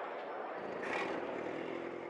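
Steady drone of a propeller aircraft's engine, mostly a rushing noise with a faint low hum.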